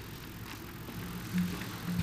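Low room noise in a hall between speakers, with faint voices murmuring off-microphone and a few soft ticks.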